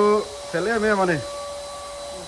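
A man speaking in two short phrases, over a faint steady high hum.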